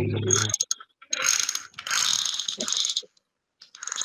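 Rapid mechanical ratcheting clicks of a computer mouse's scroll wheel as a web page is scrolled, in a run of about two seconds starting about a second in, with a shorter burst near the end.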